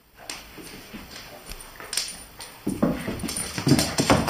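Small dogs play-fighting over a toy: scattered scuffling sounds, then a run of loud, rapid dog yaps and growls from about two-thirds of the way in.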